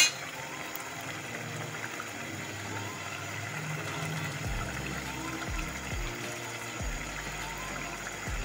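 Potatoes and fenugreek leaves frying in oil in an aluminium pressure-cooker pot, a steady sizzle, under background music whose soft beat comes in about halfway. A sharp click at the very start.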